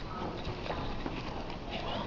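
Faint, indistinct speech in a large hall, with a few scattered clicks.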